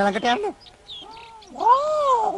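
A faint short meow, then a louder drawn-out meow that rises and falls in pitch, about a second and a half in, from the cat character played by an actor in cat make-up.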